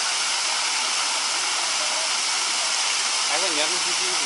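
Steady rush of flowing water, an even hiss that holds at one level throughout, with a faint murmur of a voice shortly before the end.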